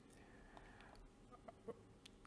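Near silence: faint room tone with a few very faint short sounds near the end.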